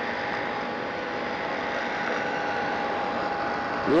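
Steady background hiss and hum with a faint, unchanging high tone running through it: the room or recording noise of a talk, with no one speaking.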